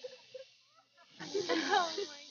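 Indistinct, hushed voices over a breathy hiss, starting about a second in.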